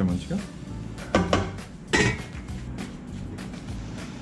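A spatula scraping and knocking against a metal cooking pot while stirring rice, with two sharper knocks about one and two seconds in.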